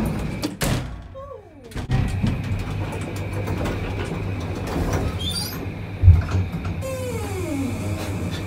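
Inside a passenger lift: the doors slide shut with a knock near the start, then the car runs with a steady low hum.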